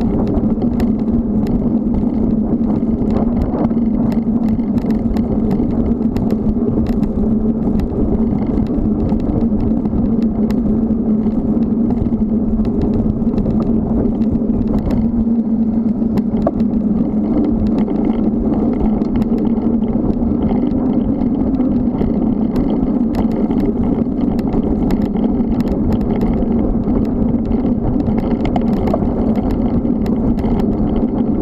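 Steady wind and tyre noise from a moving bicycle, picked up by a camera riding along on it, with a constant low hum and scattered small ticks and rattles.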